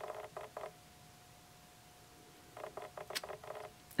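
Faint scratchy handling noises from fingers turning a ring close to the microphone, in two short bursts, one at the start and one near the end, with a single sharp click in the second. A faint steady tone hums underneath.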